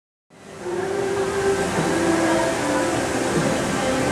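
Steady rushing noise of fountain water, with faint overlapping crowd voices, fading in just after the start.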